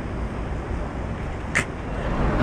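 Steady low rumble and hiss of outdoor background noise at a station, with one short sharp click about a second and a half in.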